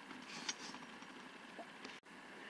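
Quiet room tone with faint handling clicks as the saw is moved about, the clearest one about half a second in and two smaller ones near the end.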